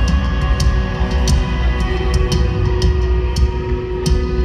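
A live country band plays an instrumental passage over a steady beat of drum and cymbal hits, recorded from the crowd on a phone.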